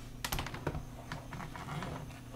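Faint, irregular clicking of keys being pressed, several short clicks spread unevenly over a low steady hum.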